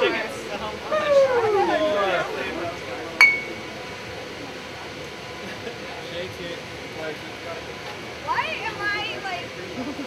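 A single sharp glass clink from champagne bottles, with a brief ringing tone, about three seconds in. Excited women's voices whoop and squeal in the first couple of seconds and again near the end.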